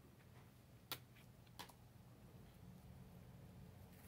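Near silence: faint room tone with two faint clicks, about a second in and again half a second later, as a plastic gift card and the planner pages are handled.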